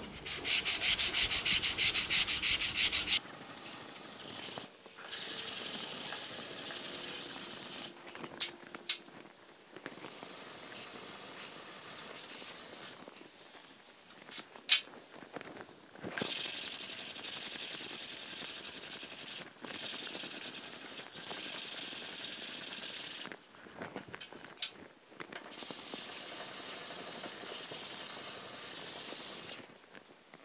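Hand block sanding of body filler with 80-grit paper on a small sanding block: runs of rapid back-and-forth scraping strokes lasting a few seconds each, broken by short pauses. The first run, about three seconds long, is the loudest.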